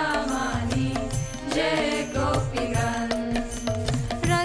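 Devotional kirtan: a sung chant carried by a steady drum beat, with sharp percussion strokes on top.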